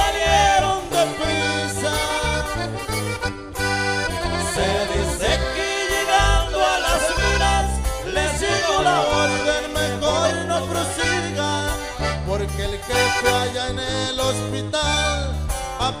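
Regional Mexican corrido music in an instrumental break: an accordion plays the melody with quick ornamented runs over a steady, stepping bass line.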